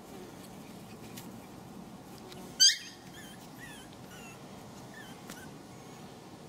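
Pomeranian puppy giving one short, loud, high yelp about two and a half seconds in, followed by several faint high whimpers.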